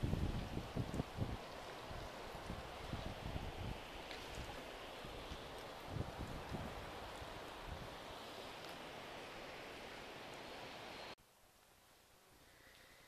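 The Chewuch River at peak spring flow, rushing as a steady wash of white noise, with wind buffeting the microphone in low gusts. It cuts off suddenly near the end to quiet indoor room tone.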